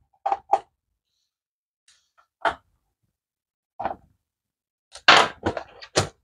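Short plastic clicks and knocks from a Dell Latitude E6410 laptop keyboard being pried loose and handled as it is taken out. A few single taps are spread out, then a quicker cluster of knocks comes near the end.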